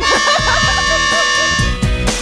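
A small plastic fan horn blown in one steady blast of about two seconds, cutting off near the end, over background music with a regular beat.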